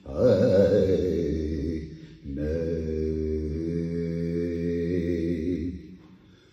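A man singing unaccompanied into a microphone: a wavering, ornamented phrase, a short break about two seconds in, then one long held note that fades near the end.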